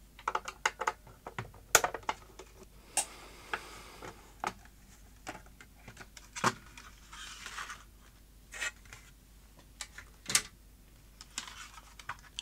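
Plastic case of a small DAB kitchen radio being unscrewed and prised apart: scattered clicks and knocks of screwdriver and plastic parts, with brief scraping around three and seven seconds in.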